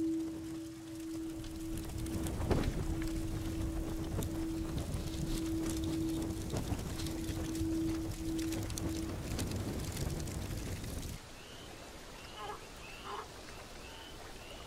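Flames crackling as a painted icon burns, over a steady held tone. About eleven seconds in, the crackling stops, leaving quieter outdoor ambience with a few short bird chirps.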